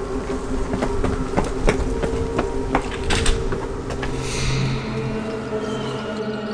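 Film soundtrack: a low sustained drone under scattered sharp clicks and taps, with a falling whoosh about four seconds in.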